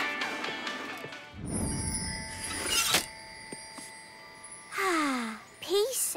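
Cartoon soundtrack music fading out, then a rising whoosh that ends in a sharp hit about halfway through, as a scene transition. Near the end a girl's voice gives a long falling 'ahh', like a sigh, followed by a short rising vocal sound.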